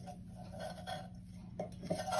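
Faint rubbing and rasping of jute twine being pulled and knotted through a hole in a tin can, with a couple of light taps near the end.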